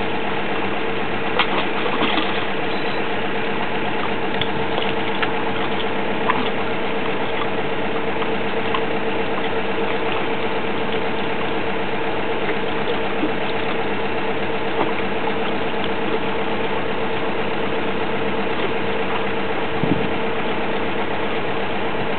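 Engine of a geotechnical drilling rig running steadily at constant speed, with one steady droning note throughout and a few sharp knocks in the first couple of seconds.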